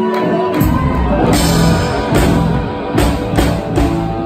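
Live rock band playing: an electric guitar line, then drum kit and bass come in together about half a second in, with cymbal hits recurring through the bar.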